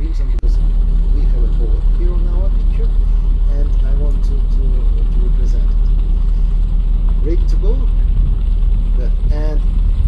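Boat engine running with a steady low rumble, heard from on board, with people's voices talking in the background.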